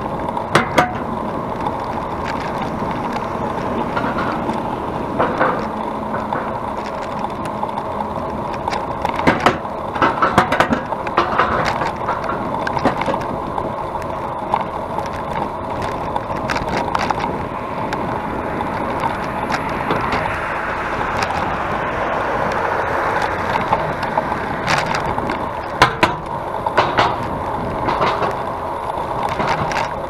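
Steady wind and road noise picked up by a handlebar-mounted action camera on a moving road bicycle, with occasional sharp knocks from the mount over bumps. Passing traffic swells the noise in the second half.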